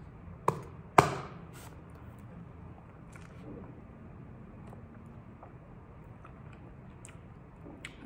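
A wide plastic straw stabbed down through the sealed lid of a plastic drink cup: a sharp pop about half a second in and a louder one at about a second. Then only faint sounds while a thick yogurt drink is sipped through the straw.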